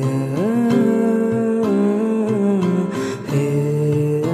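A man singing a wordless melody over acoustic guitar, holding long notes that slide from one pitch to the next, with a brief break about three seconds in.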